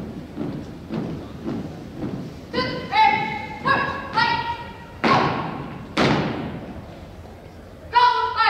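A squad of drill cadets marching in step on a hardwood gym floor, footfalls about twice a second, then a string of short shouted calls, then two loud stomps a second apart as the squad halts, ringing in the hall.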